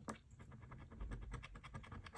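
A coin scratching the coating off a lottery scratch ticket in quick, repeated short strokes.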